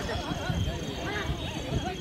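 Several people shouting and calling over one another.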